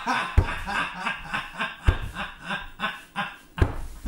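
A person laughing in a rapid run of short bursts, with three dull low thumps spaced through it.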